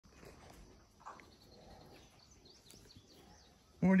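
Faint outdoor farmyard ambience with a few soft bird chirps.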